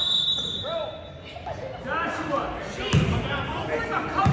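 A referee's whistle blows one steady, high note for about a second. Players and spectators then shout in the gym, and a basketball thuds on the hardwood floor a couple of times near the end.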